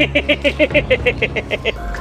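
A person laughing in a fast, even run of 'ha-ha-ha' syllables, about nine a second, breaking off shortly before the end.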